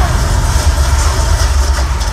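Loud concert sound in an arena: a heavy, steady bass rumble from the PA under a wash of crowd noise.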